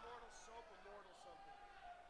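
Near silence with faint talking in the background.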